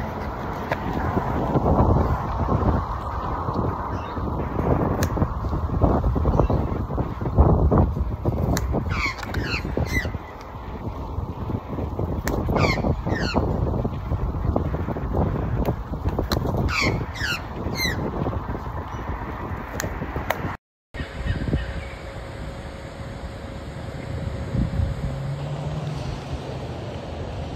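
Australian magpie giving sets of short, falling calls as it swoops at a cyclist, over steady wind and riding rumble on the microphone. The sound drops out for a moment about three-quarters through, where the recording cuts, and only steady hiss follows.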